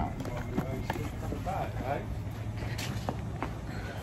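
A few light clicks and knocks as a person climbs out of a parked car, over a low steady rumble, with faint voices about a second and a half in.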